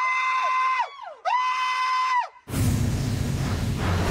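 Two long, high-pitched screams from a person, each held for about a second at a steady pitch. A little past halfway, a loud rush of noise cuts in.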